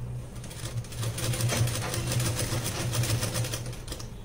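Home sewing machine stitching a zipper into a blouse seam: a fast, steady run of needle strokes that starts about a second in and stops just before the end.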